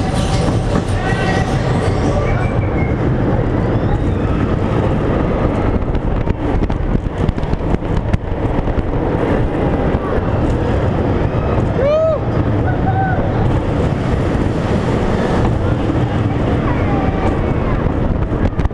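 Schwarzkopf roller coaster train (Mindbender) running on its steel track, heard from on board: a steady rumble with dense rattling clicks, and a short rising-and-falling tone about twelve seconds in.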